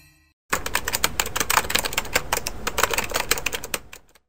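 Typing sound effect, a rapid, irregular clatter of typewriter-like key clicks. It starts about half a second in after a brief silence and lasts about three and a half seconds.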